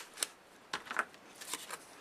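Small scissors snipping through a patterned paper strip: a few short, crisp cuts spread over the first second and a half.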